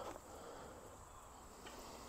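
Quiet outdoor ambience with a faint, steady, high-pitched drone of insects.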